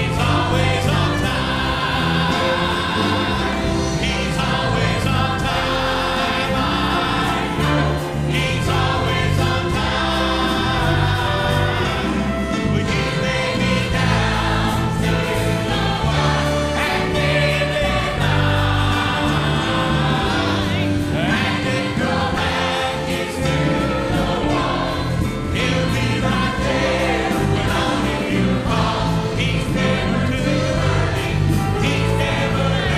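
Church choir singing a gospel song over a band, with a bass line stepping from note to note beneath the voices.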